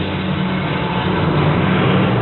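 Steady low rumbling drone from a show soundtrack played through loudspeakers, in a pause in the narration.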